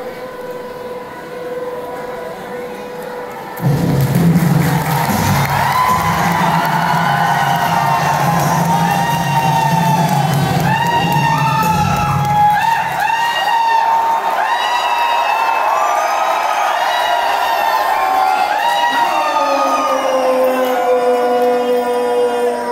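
A large grandstand crowd cheering and shouting over loud music. The sound jumps up sharply about four seconds in, with many rising-and-falling shouts overlapping. Near the end a single long note slides down and holds steady.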